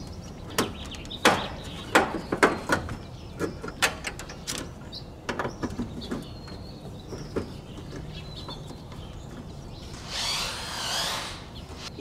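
Irregular metallic clicks and knocks as a thick service cable is worked into the main lug of a 200-amp electrical panel and the lug screw is tightened with a hex key. A brief rushing noise swells up near the end.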